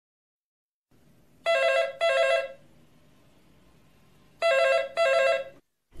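Telephone ringing: two double rings, each a pair of short, steady tones, about three seconds apart.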